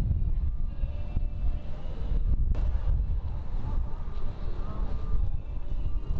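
Steady low outdoor rumble with faint voices in the background and a brief click about two and a half seconds in.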